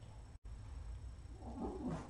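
A cat gives a short pitched call about a second and a half in, during play with a wand toy, over a low steady hum.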